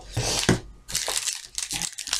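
Plastic snack packaging crinkling and rustling in irregular bursts as packets are handled.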